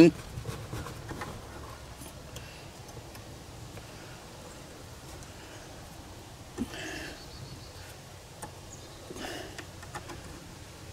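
Faint handling sounds as an H11 LED headlight bulb is worked into the back of the headlight housing and twisted to lock, with a single light click about six and a half seconds in.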